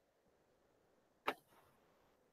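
Near silence, broken by a single short, sharp click a little over a second in.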